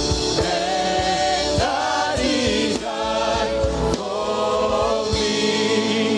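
Live gospel worship singing by a male lead singer and a group of female backing singers on microphones, in sustained phrases with held notes.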